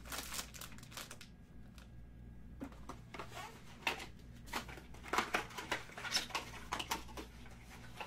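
Packaging from a trading-card box being handled: scattered rustles, crinkles and light taps, busier in the second half, over a low steady hum.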